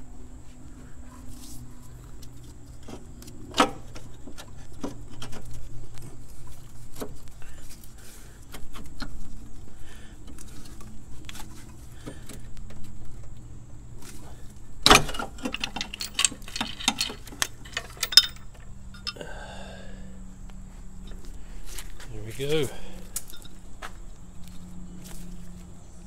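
Intermittent metallic clinks and knocks of hand tools, the engine hoist chain and a loosened motor mount being worked in a car's engine bay, with a quick run of sharp clanks about halfway through.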